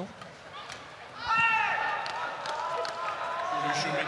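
An indistinct raised voice in the hall, its pitch rising and falling, over a quiet background with a few faint knocks in the first second.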